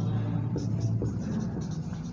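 Marker pen writing on a whiteboard: a run of short, light strokes as letters are formed.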